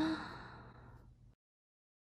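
A woman's voiced sigh: a brief vocal onset that turns into a breathy exhale fading over about a second, a sign of dismay at the badly printed tote bag. The sound then cuts off abruptly to silence.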